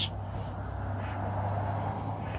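Steady low hum under even background noise, with no distinct sound standing out.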